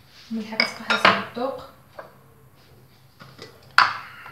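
Kitchen utensils and small bowls clinking on a counter: a few sharp clinks about a second in, then one loud clink near the end.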